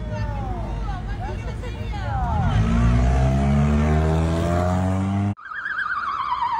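A car engine revving, its pitch rising steadily over about three seconds, with short squealing chirps over it. It cuts off abruptly and an ambulance siren warbles, falling in pitch, near the end.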